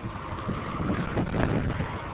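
Wind buffeting the microphone, an uneven rumbling noise.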